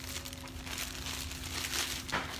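A plastic bag crinkling as it is handled, loudest in the second half.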